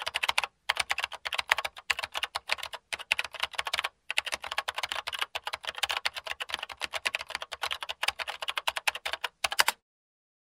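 Fast typing on a computer keyboard: a dense, continuous run of key clicks with a few short pauses, stopping just before the end.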